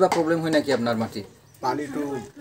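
Men talking in conversation, with a short pause about one and a half seconds in.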